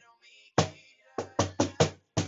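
Wooden cajon played with bare hands: a single strike about half a second in, then a quick run of four strikes in the second half.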